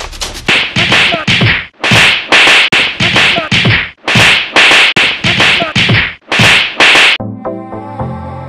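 A rapid series of loud slap and whack hits, about three a second, for a staged beating. About seven seconds in the hits stop and background music begins.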